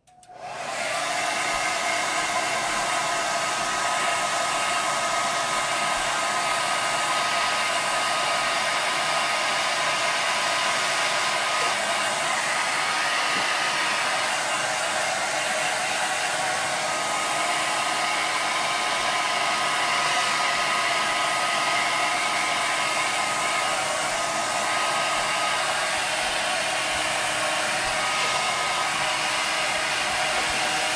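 Handheld hair dryer switched on and running steadily: a constant rush of air with a faint steady whine on top, drying a layer of chalk paste on a metal sign.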